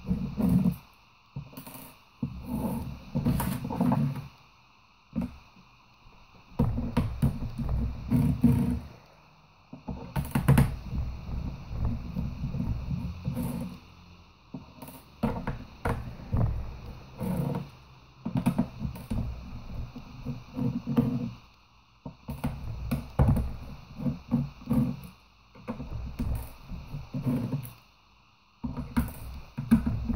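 A screwdriver turning screws out of a laptop's plastic bottom case: repeated stretches of low creaking and grinding, each a second or two long with short pauses between, and a few sharp clicks.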